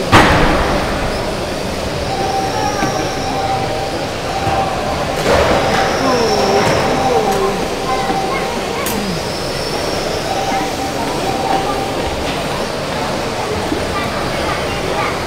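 Electric GT12 1/12-scale RC pan cars racing on a carpet track, their motors whining up and down as they pass, against a steady reverberant hall noise. A sharp knock comes right at the start.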